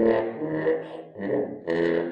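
Trombone played with a rubber plunger mute held at the bell: sustained notes in short phrases, with a brief break about a second in before the next phrase.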